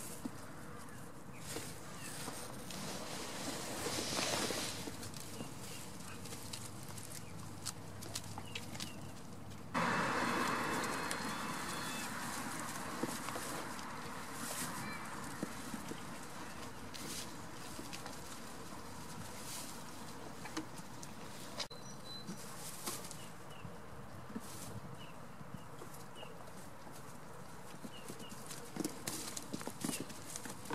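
Goat kids moving about a straw-covered pen, their small hooves tapping and scuffing on straw and wooden boards in short irregular clicks. About ten seconds in, a sudden louder rush of noise starts and fades away over several seconds.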